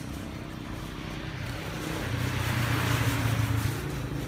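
A motor vehicle going past, its engine and road noise swelling to a peak about three seconds in and then easing off.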